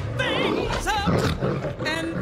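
Cerberus, the animated three-headed hellhound, roaring and growling: a cartoon monster sound effect.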